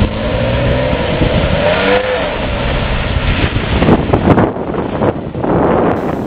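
Car engine revving hard as the white sedan spins its wheels through a doughnut on loose dirt. The engine note climbs over the first couple of seconds, over a steady rush of wheelspin.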